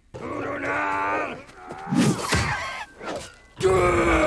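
Film battle soundtrack: three long bursts of yelling voices, with a noisy crash among them about two seconds in.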